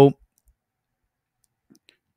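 A man's spoken word cuts off just as the sound begins, followed by near silence with a few faint small clicks.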